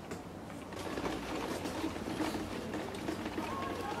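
Indistinct voices of passers-by in a street, over the rattle and jostle of a wheelchair rolling across cobblestones.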